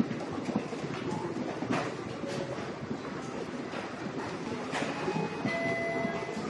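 Steady rumbling background noise with scattered small knocks and rustles, the kind made by clothing rubbing against a body-held microphone. A faint high electronic tone sounds briefly near the end.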